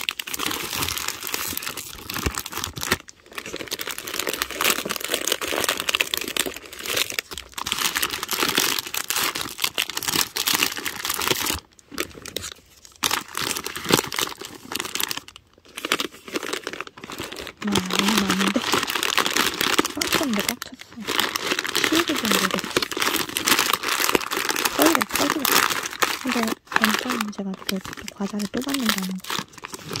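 Plastic snack wrappers and the coated lining of a small drawstring bag crinkling and rustling as wrapped snacks are handled and packed into the bag, in bursts with brief pauses between them.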